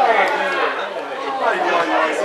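Several voices talking and calling out over one another.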